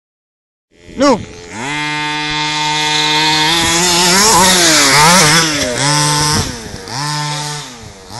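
Redcat Dune Runner RC buggy's 26cc two-stroke engine running at steady high revs, its pitch rising and falling as the throttle is worked through the middle seconds, with brief drops as it is let off, after a short shout about a second in.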